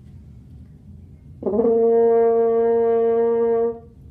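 French horn playing a single held note, the beginner's high F fingered with the first valve, starting about a second and a half in and held steady for about two and a half seconds before stopping.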